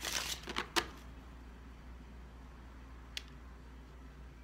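A deck of playing cards being handled as a card is drawn: a brief rustle and a few soft clicks in the first second, then a low steady hum with a single small tick about three seconds in.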